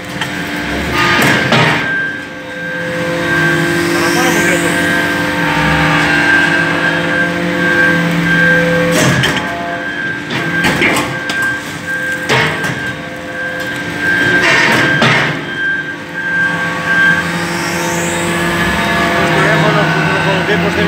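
Hydraulic briquetting press compacting copper chips into briquettes: a steady hum of several tones from the hydraulic power unit that steps in pitch as the ram works. Sharp metallic clanks come about a second in and again between nine and fifteen seconds in, and a rising whine comes twice, in a cycle of about fourteen seconds.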